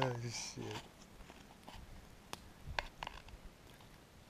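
A man's voice briefly at the start, then quiet with a few faint, scattered clicks and crackles.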